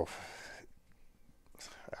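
A man's soft breathy exhale, a pitchless hiss of about half a second, then near quiet, and a brief intake of breath just before he speaks again.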